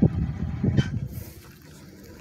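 Wind buffeting the phone's microphone: an uneven low rumble that dies down about a second and a half in.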